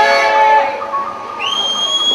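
Burmese nat festival ensemble music. A struck crash rings and fades over the first half, then a shrill, whistle-like note slides upward and is held near the end.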